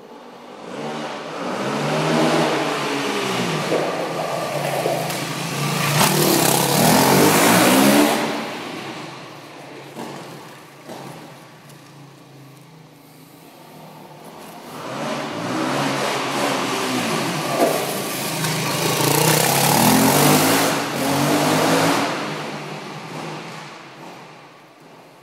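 Yamaha WR450F dirt bike's four-stroke single-cylinder engine revving hard in two long passes, its pitch rising and falling with the throttle and each pass ending in a loud full-throttle stretch, with a quieter lull in between.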